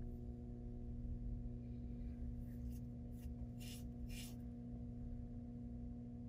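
Steady low hum from a motorized display turntable, a few held tones that do not change, with several faint ticks about two and a half to four and a half seconds in.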